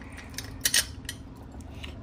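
A few light metallic clinks as a steel bolt and washer are handled against a steel supercharger pulley-holding tool plate, the loudest pair just under a second in, over a steady low hum.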